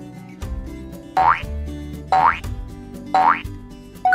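Background music with three short rising-pitch sound effects, one each second, marking a quiz countdown timer.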